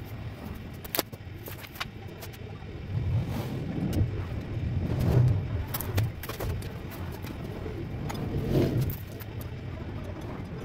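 Low rumble of a passing motor vehicle that swells and fades over several seconds, with a few light clicks and knocks from a bicycle being lifted and turned.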